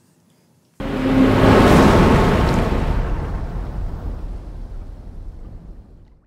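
A loud burst of rushing, rumbling noise that starts suddenly about a second in, swells, and slowly dies away over about five seconds.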